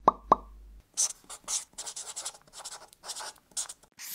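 Logo-animation sound effects: two quick pops right at the start, then about three seconds of short, irregular scratchy strokes like a pen writing on paper.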